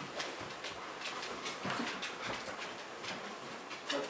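Bed-bug detection dog sniffing and breathing as it searches, a string of short, faint snuffs.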